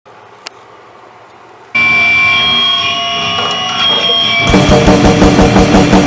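A quiet start with a single click, then a loud, sustained drone of several steady tones cuts in suddenly. About four and a half seconds in, a drum kit comes in with fast grindcore blast beats over it.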